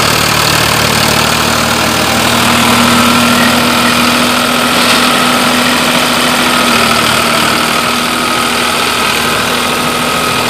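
Farmtrac 60 tractor's diesel engine running steadily under load while pulling a rotavator through dry soil, a constant drone with a steady hum in it.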